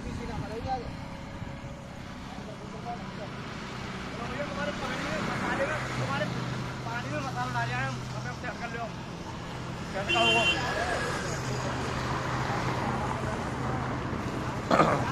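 Indistinct voices of construction workers calling and talking, over a steady low motor hum that sets in about six seconds in; a brief louder call comes about ten seconds in.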